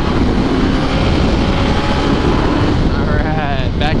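Yamaha R1 inline-four sport bike cruising steadily at highway speed, its engine under heavy, steady wind rush on the helmet-mounted microphone.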